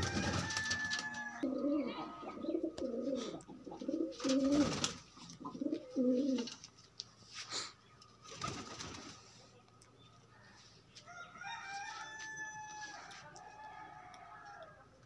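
Domestic pigeons cooing: a run of low, wavering coos for several seconds, then quieter. Several short rustling knocks come through as well, the loudest around the middle of the cooing.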